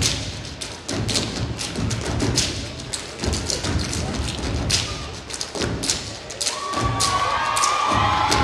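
Stage dance routine: a heavy thudding beat with many sharp hits, over music with a pulsing bass. Audience voices rise, cheering, in the last second or so.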